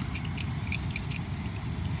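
Faint, scattered clicks of plastic toy parts being pressed and snapped together as a Transformers Megatron figure is fitted into its truck form, over a steady low rumble.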